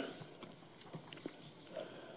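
Quiet pause at a lectern with a few faint separate clicks about half a second apart, the small handling sounds of someone working at the desk, and a brief faint sound near the end.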